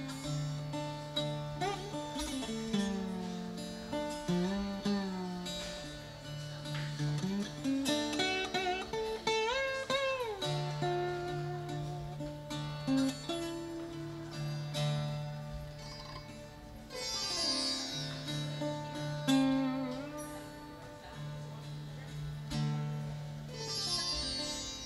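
Mohan veena, a 21-string Indian slide guitar with sitar-style drone and sympathetic strings, played lap-style with a slide in a minor tuning. Gliding melodic phrases slide up and down in pitch over a steady low drone.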